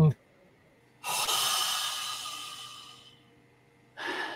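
A man's long, audible breath out, starting about a second in, loudest at first and fading away over about two seconds.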